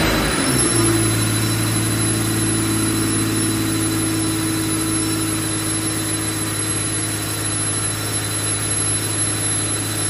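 12-valve Cummins inline-six turbo diesel held at steady revs under load on a hub dyno, with a steady high turbocharger whistle over the engine's drone. This is a steady-state load hold, with boost and exhaust gas temperature climbing.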